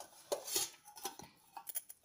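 A steel plate lid is prised off a steel pot with a spoon and set down, giving a few light metallic clinks: a cluster about half a second in and a few more near the end.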